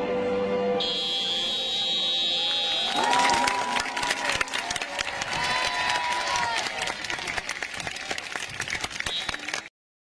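A steady musical chord, then a long high shrill tone from about one to three seconds in, followed by applause and cheering from a crowd at a school sports ground, which fades and cuts off just before the end.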